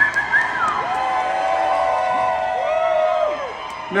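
Concert crowd cheering, with a few voices close to the phone holding long whooping yells.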